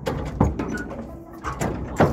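A horse's hooves thudding and knocking on the floor of a stock trailer as it steps up inside, with the trailer rattling; a few sharp knocks stand out, about half a second in and again near the end.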